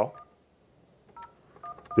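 Faint touch-tone keypad beeps from an Avaya J139 desk phone as an extension number is dialed to transfer a call: about four short tones, one just after the start and three close together in the second half.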